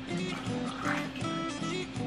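Background music, a steady pattern of repeating notes.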